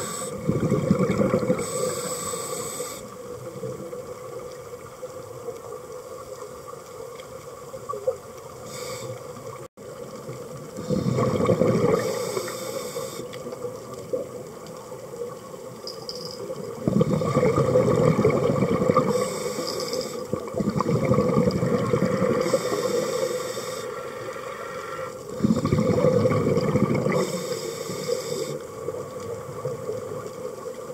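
Scuba diver breathing through a regulator underwater: a short hiss on each inhale and a loud rush of exhaled bubbles, repeating every six to eight seconds.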